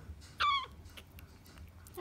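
A young hooded crow gives one short begging call about half a second in, its beak gaping at the feeding syringe.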